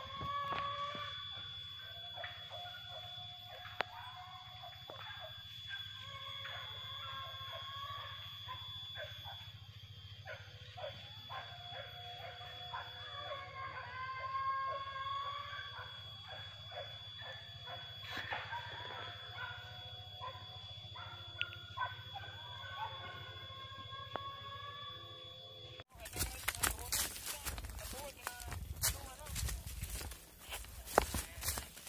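Faint, distant hunting dogs baying and barking across a valley, mixed with far-off voices, over a steady high-pitched insect drone. About 26 s in this gives way to louder close rustling and footsteps in undergrowth.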